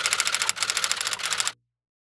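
Typewriter keystroke sound effect: rapid key clacks at about a dozen a second, with a brief break about half a second in, stopping abruptly about a second and a half in.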